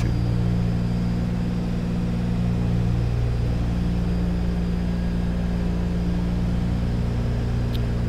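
The twin radial piston engines of a 1943-built Douglas DC-3 on short final approach, a steady, even drone.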